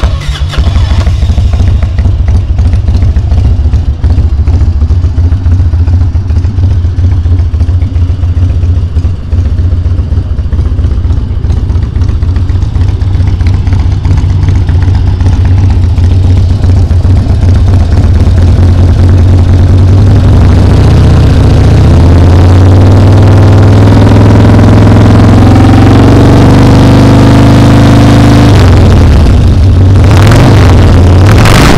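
A 2000 Harley-Davidson Dyna Wide Glide's 88-inch carbureted V-twin running at idle through aftermarket slip-on mufflers, loud and steady. The exhaust note grows fuller about two-thirds of the way through.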